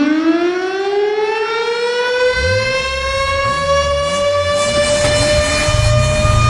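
A siren winds up, its tone gliding upward and then settling into a steady held pitch. From about two seconds in, a low pulsing bass joins underneath it.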